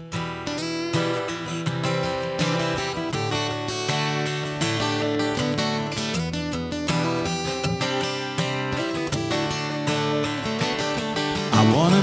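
Two acoustic guitars strumming chords in the instrumental intro of a country song, starting suddenly. A man's singing voice comes in near the end.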